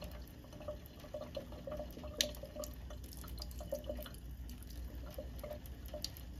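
A thin stream of kitchen faucet water trickling into the sink with irregular small dripping plinks. There is one sharp click about two seconds in.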